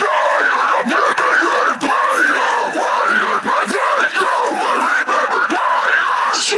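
Deathcore harsh vocals isolated from the band's mix: continuous screaming with no clear words, unbroken through the whole stretch.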